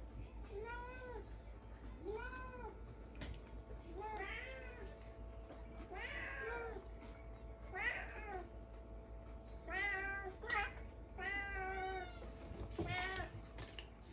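Domestic cats meowing repeatedly, about eight or nine meows spaced a second or two apart, each rising then falling in pitch, begging for food while a person eats.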